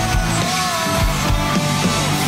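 Live rock band playing loud, with electric guitars holding and bending notes over a steady drum beat.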